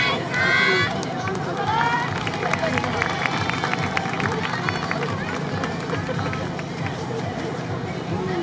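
A dance team on an outdoor stage: voices calling out at the start, then a quick patter of sharp taps and footfalls about two to four seconds in as the dancers change formation, over crowd noise.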